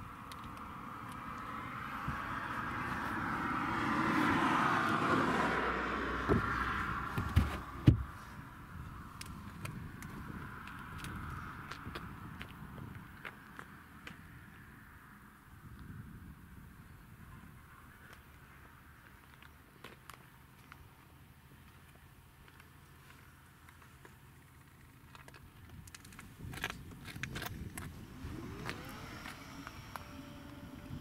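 A vehicle passing by, its tyre and engine noise swelling to a peak and fading over a few seconds, followed by three sharp knocks, the last the loudest, and then a few faint clicks near the end.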